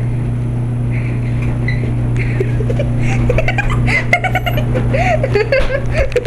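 A loud, steady low hum, with indistinct voices coming in from about halfway through.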